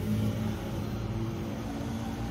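A steady, low mechanical hum with a few faint steady tones over a soft background hiss, with no sudden sounds.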